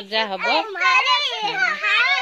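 Children talking in high-pitched voices.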